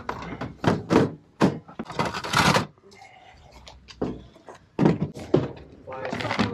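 Objects being handled in and lifted out of a plastic storage tote: a string of sharp knocks and thunks as wood and boards bump the tote's hard plastic sides, with a longer scrape about two seconds in.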